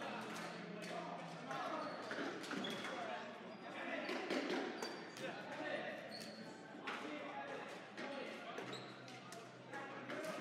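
Small rubber balls bouncing and smacking on a hardwood gym floor, in many separate hits, over indistinct chatter and shouts of students, echoing in a large gym.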